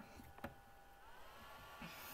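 Near silence: room tone with one faint short click about half a second in.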